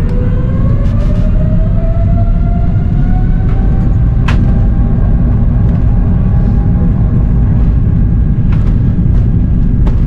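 Airbus A330-900neo on its takeoff roll, heard from inside the cabin: a heavy, steady rumble with its Rolls-Royce Trent 7000 engines' whine rising in pitch over the first four seconds and then holding steady. A few sharp knocks come through, the loudest about four seconds in.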